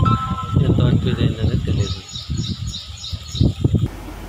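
Outdoor ambience: birds chirping in short repeated calls over a low, uneven rumble.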